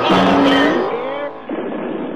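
Drag-racing car engine accelerating down the strip, its pitch rising steadily for about a second, over background music. About one and a half seconds in it gives way abruptly to a different music track.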